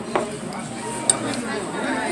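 A few sharp clinks and knocks of tableware on a restaurant table, two close together at the start and another about a second in, over a background of dining-room chatter.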